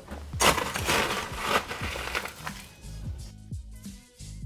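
Crushed ice being scooped and dropped into a glass of muddled mint leaves, a rough crunching rush lasting about two seconds, over background music.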